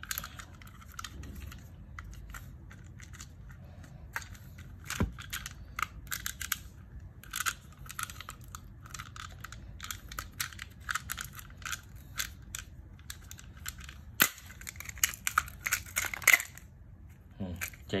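Plastic case of a miniature circuit breaker being worked apart by hand: a run of small clicks, snaps and scrapes, with a sharper snap about five seconds in and the sharpest one about fourteen seconds in.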